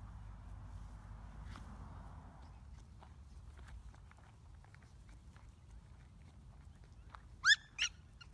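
A small puppy gives two short, high yips that rise in pitch, close together near the end. Before them, faint footsteps crunch on gravel over quiet outdoor background.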